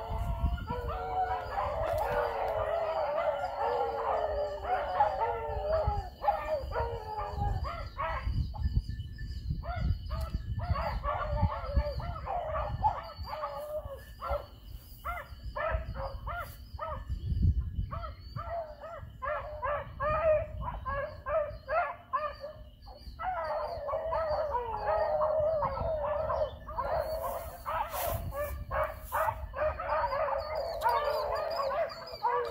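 A pack of beagles baying together while running a jumped rabbit, many voices overlapping. The full chorus breaks into scattered short barks through the middle and swells into a full chorus again near the end.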